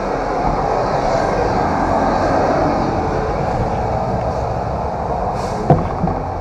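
A steady, loud rushing noise with a low hum underneath, unbroken throughout, with a brief sharp knock just before the end.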